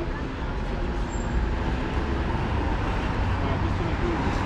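Street traffic noise, a steady low rumble of passing cars, with a car driving by near the end.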